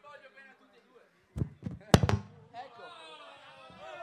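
A microphone dropped and hitting the ground: two sharp thuds about a second and a half and two seconds in, the second the louder.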